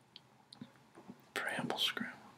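A man's faint mouth clicks, then, about a second and a half in, a short breathy, whispered exhale.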